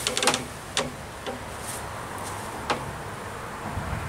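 Serac hammock's suspension creaking and clicking as a person settles her weight into it: a handful of short, sharp clicks spread over the first three seconds, with little in between.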